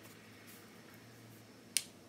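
A single sharp click as a small round glass mosaic tile is set down onto the wooden base, over faint room tone.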